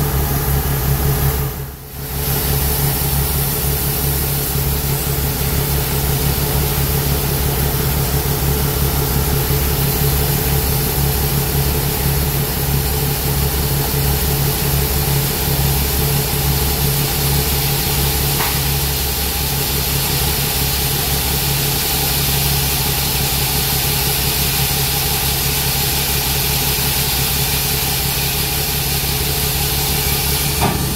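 John Deere combine running steadily while its unloading auger pours shelled corn into a grain trailer: a steady engine and auger drone under an even hiss, with a brief drop in level about two seconds in.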